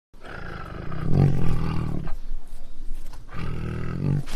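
A tiger roaring twice, deep and loud: one long roar over the first two seconds, then a second roar beginning about a second before the end.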